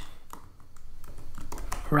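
Light keystrokes on a computer keyboard, typing a short word.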